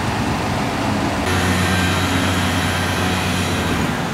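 Flatbed tow truck's engine and hydraulics running with a steady hum. About a second in it grows louder and a hiss joins it, as the truck works to load a minivan with a failed transmission onto its tilted bed.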